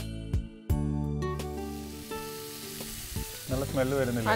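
Chicken liver sizzling as it sautés in olive oil in a nonstick pan, stirred and turned with a spoon. A short music sting plays over the first second and a half, then the frying sizzle carries on alone.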